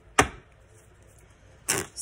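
A single sharp tap, a deck of tarot cards knocked or set down on the tabletop a fraction of a second in, followed by a short brushing noise near the end.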